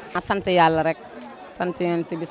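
A person speaking into an interview microphone, in short phrases with brief pauses, with the chatter of people in the background.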